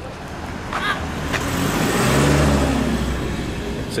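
A vehicle driving past close by: its engine note and tyre noise swell to a peak about two seconds in, then fade.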